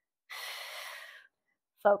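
A woman's audible breath through the mouth, one breathy hiss about a second long, taken with the effort of an abdominal exercise.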